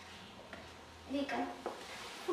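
Quiet room murmur, then a short spoken word or two about a second in, followed by a single light click.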